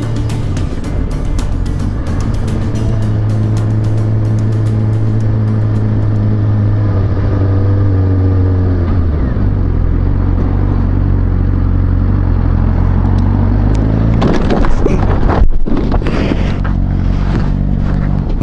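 Suzuki GSX-R600 inline-four engine running steadily under the rider, its pitch dropping about halfway through as the bike slows. About fourteen seconds in, a loud burst of crash noise lasting a couple of seconds as the motorcycle is clipped by a car and goes down on the pavement.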